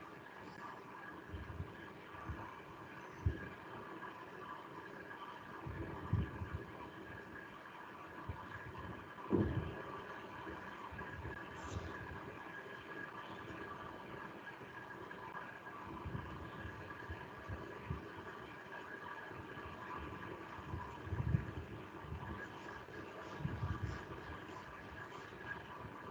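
Faint steady background hum on a video-call line, with a few scattered low thuds and bumps.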